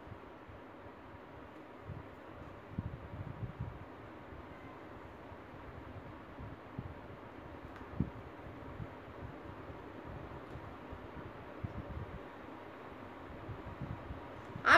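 Steady faint background hiss of room noise, with scattered faint low knocks and one sharper tap about eight seconds in.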